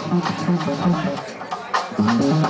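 A live band playing: electric guitar and bass guitar over a drum kit, with drum and cymbal strikes through a moving melodic line.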